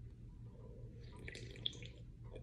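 A person drinking from an aluminium can: a faint rush of liquid and a swallow about a second in, with a sharp click near the end of it, over a steady low hum.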